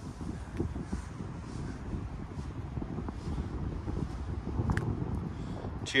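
Wind buffeting the microphone: a steady, uneven low rumble with a couple of faint ticks.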